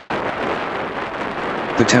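Wind buffeting the microphone of a falling high-altitude balloon payload's camera during a fast parachute descent after the balloon burst: a steady noisy rumble that begins abruptly right at the start.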